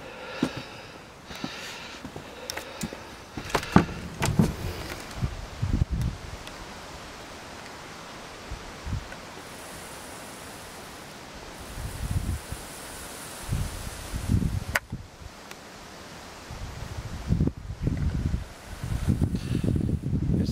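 Outdoor ambience: wind buffeting the camera microphone in irregular low gusts over a steady rustling hiss, with a few sharp clicks scattered through it.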